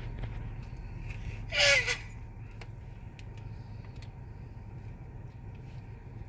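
Steady low rumble of a car heard from inside its cabin. About a second and a half in, a short, loud squeal slides down in pitch, like a small child's cry.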